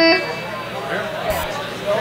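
A single short plucked electric guitar note at the start, then indistinct talking over the PA between songs.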